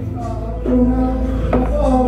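A man singing into a microphone over backing music with a strong, steady bass; his voice holds and bends long notes.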